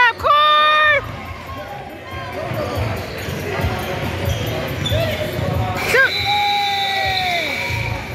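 A basketball bouncing and thudding on a gym's hardwood floor, with a spectator shouting a long held call right at the start and another about six seconds in.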